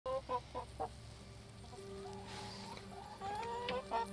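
Domestic hens clucking: several short clucks in the first second, then a longer rising call a little after three seconds in.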